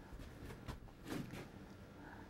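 Quiet room tone with a few faint, soft clicks.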